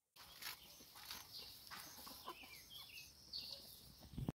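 Faint, scattered clucks and short calls from a small flock of chickens feeding.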